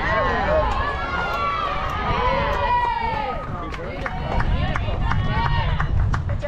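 Spectators and players cheering and yelling together after a hit, many high voices overlapping for the first three seconds or so, then thinning to scattered shouts.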